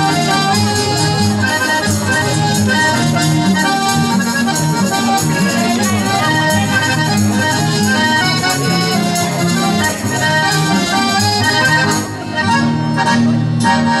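Instrumental introduction of an Aragonese jota played by acoustic guitars and an accordion, with a steady rhythmic bass line under the melody, before the singer comes in.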